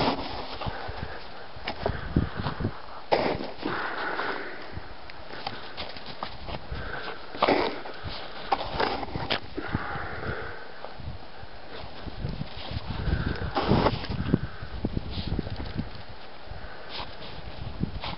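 A Jack Russell/Rat Terrier sniffing and snuffling with her nose in the snow. Irregular crunches of packed snow come throughout as she digs and moves.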